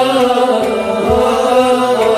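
Kashmiri Sufi song: a male voice holds a long, slightly wavering melodic line over instrumental accompaniment, with a low drum stroke about a second in.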